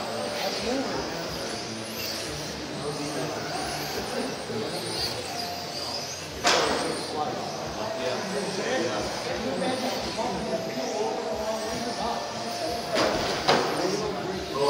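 Electric RC touring cars lapping an indoor track, their motors heard as faint high whines that rise and fall as they pass. Sharp knocks come about six and a half seconds in and twice near the end, over a background of voices in a large hall.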